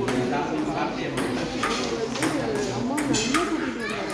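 Several people talking at once in a large hall, with a run of sharp clicks, several of them about half a second apart.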